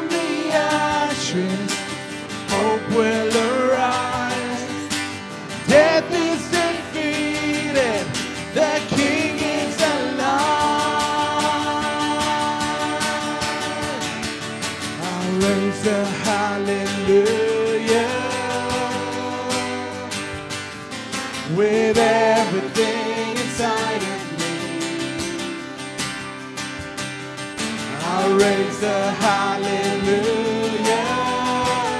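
Live worship band playing: acoustic guitar and drum kit, with several voices singing long held notes.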